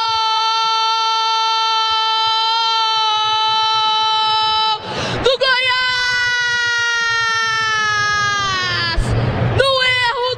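Brazilian radio football commentator's drawn-out goal cry, "gooool", held on one high note for about five seconds, then after a quick breath a second long held note that sags slightly in pitch near the end, followed by a gasp for breath.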